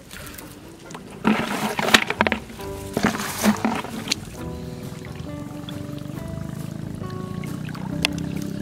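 Background music with held notes. About a second in, two short bursts of splashing and sloshing as hands work through shallow muddy water.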